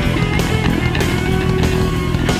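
A live jazz-rock band playing loud: electric guitars, electric bass, drums and saxophone. Drum strikes land about every half second, and a held note sounds through the middle.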